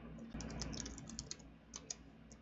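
Faint typing on a computer keyboard, a quick run of key clicks through the first second and a half, then a couple more clicks near the end, as a folder name is typed in.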